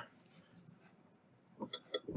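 Near silence, then near the end three quick, light clinks as fingers handle the glass measuring cup and the wire hook hanging in it.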